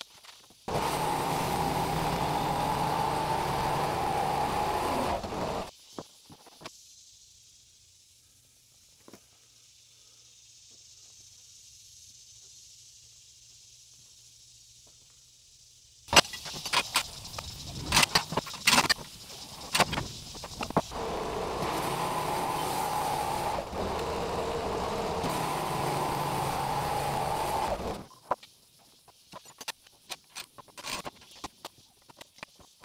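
A portable band sawmill's machinery runs steadily for about five seconds and stops. After a quiet stretch with a faint hum comes a run of sharp knocks and clatters, then the machinery runs again for about seven seconds.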